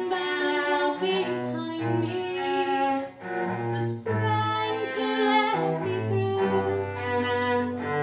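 Cello bowed in a slow line of sustained, rich notes that change about once a second, with two brief breaks between phrases a little past the middle.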